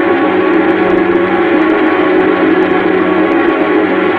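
Orchestral music holding one loud, sustained final chord.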